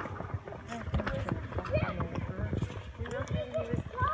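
Footsteps on concrete pavement, a run of short scuffing steps, with children's voices talking in the background.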